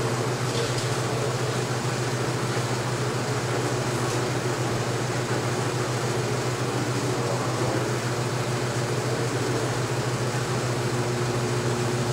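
35mm carbon arc cinema projector running in the booth: a steady low hum with an even whirring noise over it.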